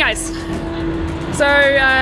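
A car engine passing with a falling pitch, its note then holding steady; a woman's voice begins about one and a half seconds in.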